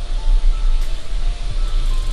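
Kitten purring close to the microphone as a steady, pulsing low rumble, with a few faint short musical notes above it.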